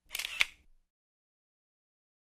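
A brief edit-transition sound effect, a short high swish ending in one sharp click about half a second in, then dead silence.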